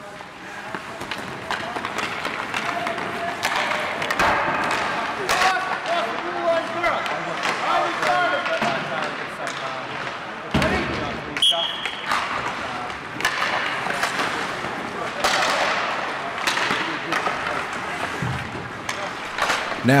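Ice hockey practice in a rink: pucks repeatedly knocking off sticks and banging into the boards, skate blades scraping the ice, and players and coaches calling out.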